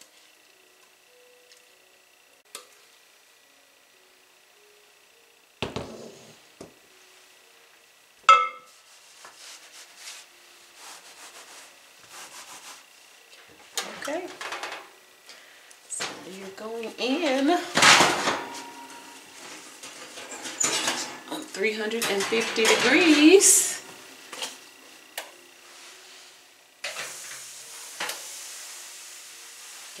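Scattered clinks and scraping of metal cake pans and a batter bowl, with longer bursts of pans scraping and clattering in the middle. Near the end a steady sizzling hiss starts suddenly: damp bake-even strips wrapped around the layer pans sizzling in the hot oven.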